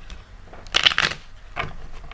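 A deck of cards being shuffled: one short rustling burst just before the middle, then a fainter one.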